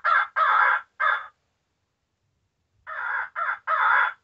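Cass Creek Ergo electronic crow call playing its 'Mac Daddy' call, a recording of a lone crow calling out to other crows. Two caws at the start, a pause of about a second and a half, then three more caws near the end, very loud and with no low end.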